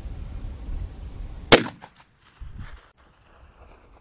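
A single shot from a muzzle-braked .45-70 Government rifle, sharp and sudden about one and a half seconds in, with a short fading tail after it.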